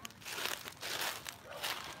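Footsteps crunching and crackling through a thick layer of dry fallen leaves, several uneven steps.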